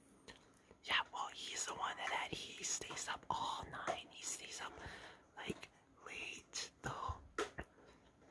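A person whispering, starting about a second in and running in short phrases with brief pauses.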